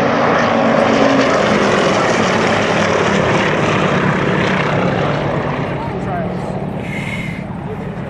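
Three Yak-52s' nine-cylinder radial engines and propellers passing low in a close three-ship formation flyby. The sound is loudest about a second in and slowly fades.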